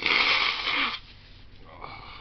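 A man blowing his nose into a tissue: one loud, breathy blast lasting about a second.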